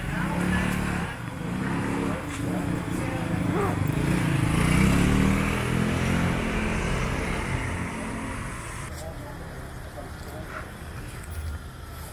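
Street sound of a motorbike engine passing, growing to its loudest about halfway through and then fading away.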